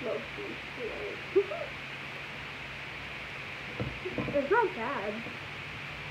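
A girl's wordless vocal sounds: short hoots and hums sliding up and down in pitch. A few come near the start and a longer string follows about four seconds in.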